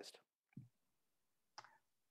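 Near silence in a pause in the conversation, broken by two faint short clicks, about half a second and a second and a half in.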